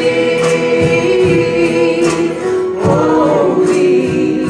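Live Christian worship band music: several voices hold long sung notes together over keyboard, acoustic guitar and bass, with a sharp accent about every second.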